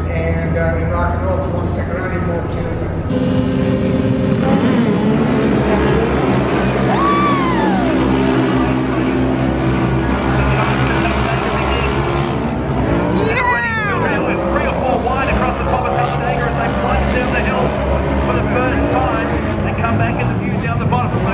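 A pack of side-by-side UTVs racing on a dirt track, engines revving hard. Engine pitch sweeps up and then down twice, a few seconds in and again about two thirds of the way through.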